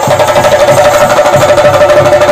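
Theyyam ritual drumming: chenda drums beaten in a fast, dense, loud rhythm, with a steady ringing tone held over the beat.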